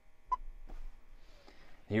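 A single short click with a brief beep-like tone about a third of a second in, from a finger pressing the touchscreen of a John Deere cab display, over low, quiet cab room tone.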